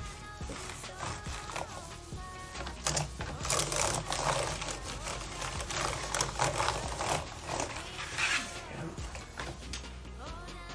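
A cleaning wipe rubbed back and forth across an Acer Nitro laptop keyboard, a rough swishing with the keys lightly clattering, loudest from about three seconds in until near the end. Background music plays throughout.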